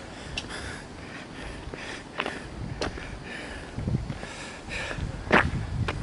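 Footsteps of someone walking from pavement onto gravel: a few scattered soft thumps and crunches, the sharpest about five seconds in.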